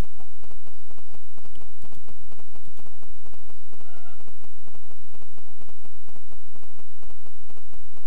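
Steady background noise with a low hum, and a short pitched call about four seconds in.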